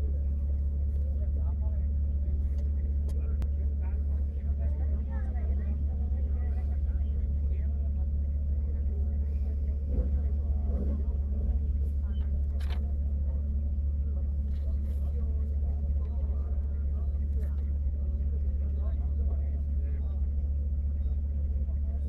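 BMW E36 320i 24-valve straight-six idling steadily while the car waits at a hill-climb start line, heard from inside the cabin.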